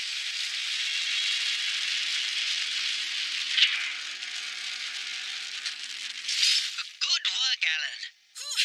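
Sound effect of a giant tracked mining crawler on the move: a steady hiss-like noise with no deep bass, with one sharp click about three and a half seconds in. A voice comes in near the end.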